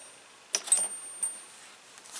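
Small metal bolts clinking against each other as they are handled, two light clicks with a brief high ring about half a second in, then a fainter click past the middle.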